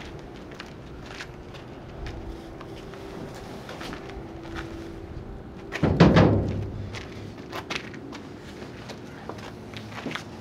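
A round wooden tabletop being dragged out of a steel dumpster: scattered small knocks and steps, then about six seconds in one loud hollow thump and scrape as it comes free, followed by a few lighter knocks.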